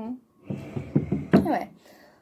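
Indistinct speech and short vocal sounds from a person, with a brief pause near the start.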